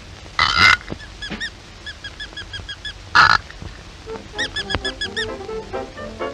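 Old cartoon soundtrack: music made of short, squeaky rise-and-fall notes, about three a second and quicker near the end, broken by two loud harsh blasts about half a second and three seconds in.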